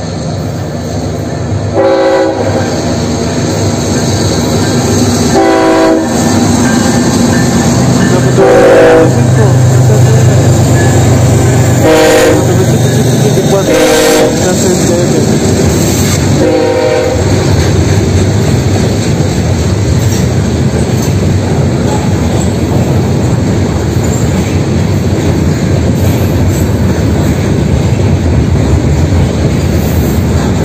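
A freight train passing, led by GE ES44AC diesel-electric locomotives. The locomotive air horn sounds about five separate blasts over the first 17 seconds while a heavy engine rumble builds and passes. After that comes the steady rumble and wheel clatter of freight cars rolling by.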